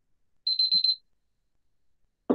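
A short, high-pitched electronic alert tone: a rapid trill lasting about half a second, starting about half a second in.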